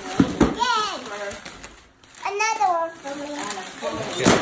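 Children's voices talking, with a couple of short knocks about a quarter of a second in.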